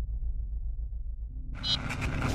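Sound design of a news-channel logo sting: a low, pulsing drone, then about one and a half seconds in a sudden bright, noisy swell with a brief high ringing tone as the logo transition starts.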